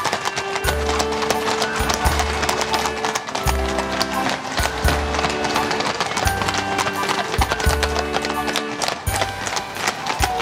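Many horses' hooves clip-clopping at a walk on a wet tarmac street, with music playing alongside in chords that change about every second.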